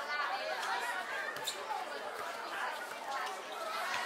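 Many overlapping voices chattering and calling out, with a sharp tap about a second and a half in.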